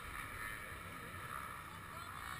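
Several dirt bike engines idling together, a steady muffled drone heard through a GoPro's waterproof camera housing.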